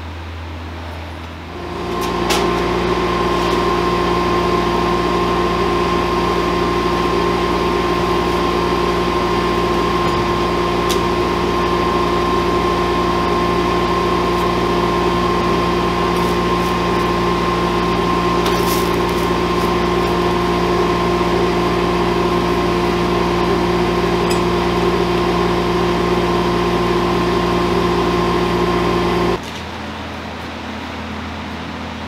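An electric machine motor runs with a steady hum, with a few faint clicks over it. It starts about a second and a half in and cuts off suddenly near the end.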